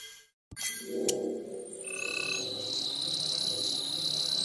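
TV channel ident sound design. A brief cut to silence is followed by a click and a low warbling, croak-like sound. Short chime-like tones come about two seconds in, over a steady high tone.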